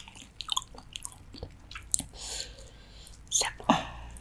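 Close-miked wet chewing of large mouthfuls of raw salmon, with many small lip and tongue smacks. There is a short breathy rush about two seconds in, and two louder wet bites near the end.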